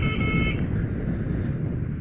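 A short, steady horn beep of about half a second at the start, over the Honda XR150L's single-cylinder engine running at low speed.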